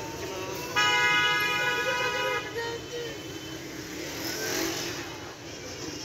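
A vehicle horn sounds once, a steady blare of about a second and a half starting nearly a second in, over the hum of street traffic.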